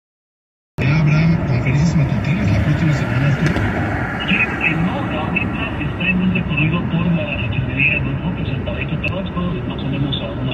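Road and tyre noise inside a car travelling on a freeway, under a man talking on a broadcast, most likely the car radio. The sound cuts out completely for about the first second.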